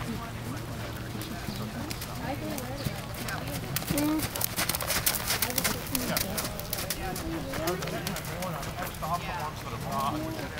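Horse's hoofbeats on sand arena footing as it canters and then trots, with a quick run of sharp thuds about four to six seconds in as it passes close by.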